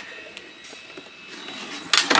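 A quiet stretch with a faint click, then near the end a sharp clack as the folded Thule XT2 tow-hitch bike carrier is handled to lift it off the tow hitch.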